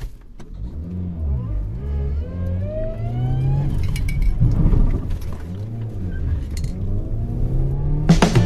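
Subaru R2 kei car's engine, heard from inside the cabin, revving up and easing off twice as the car is manoeuvred to turn around.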